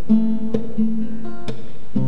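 Acoustic guitar strumming chords, with a few strokes that each ring on.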